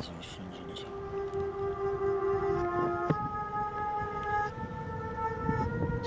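Slow electronic keyboard chords: several held notes sounding together and moving to a new chord every second or few. A rough noise swells underneath near the end.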